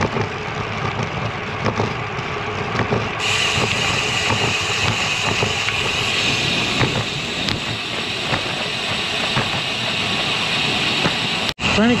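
Steady rush of wind and road noise picked up by a camera on a moving bicycle, with motor traffic under it; a brighter hiss sets in about three seconds in, and the sound cuts out for an instant near the end.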